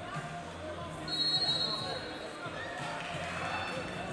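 Busy wrestling-arena ambience of indistinct background voices and chatter, with a short, steady high whistle about a second in, typical of a referee's whistle.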